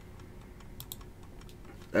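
Faint, scattered clicking from computer mouse and keyboard use: a handful of short, separate clicks.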